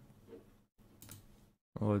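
Faint computer mouse clicks in a pause between words, over quiet microphone hiss that cuts out to dead silence twice.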